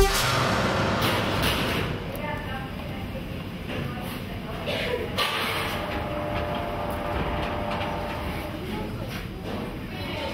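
Indistinct voices over a steady background rumble.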